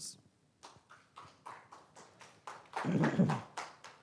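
Light, scattered applause from a small audience, individual claps heard one by one, loudest about three seconds in.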